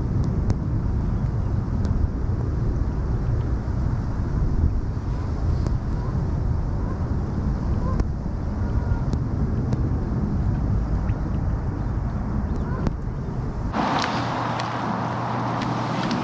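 Wind buffeting the microphone outdoors as a steady low rumble. Near the end it changes abruptly to a brighter rushing hiss of wind.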